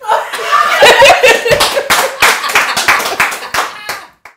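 Loud laughter with hand clapping: high-pitched laughing voices in the first second and a half, and irregular claps that carry on after the laughter eases.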